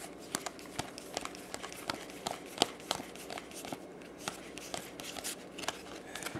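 Paper-stock baseball trading cards being flipped through by hand, one card slid off the front of the stack and onto the back at a time. The result is a quick, irregular run of soft ticks and slides.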